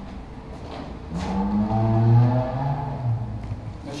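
A man's long wordless vocal sound, a hesitating hum or drawn-out 'eh', lasting about two seconds from about a second in, its pitch wavering slightly.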